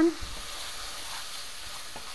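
Ground beef sizzling steadily as it browns in a hot skillet, stirred and broken up with a wooden spoon.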